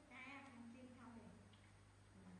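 Baby macaque giving faint, whining cries: a few held, pitched calls in the first second or so, dropping in pitch at the end.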